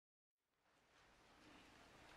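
Near silence: dead silence, then faint room hiss fading in about a third of a second in.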